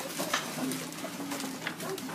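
Schoolchildren laughing and stirring in their seats, with soft giggling and a couple of light knocks.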